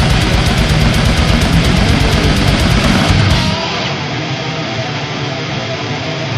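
Death metal instrumental: distorted electric guitars over fast, dense drumming. About three and a half seconds in, the drums and low end drop out and a thinner guitar part carries on, somewhat quieter.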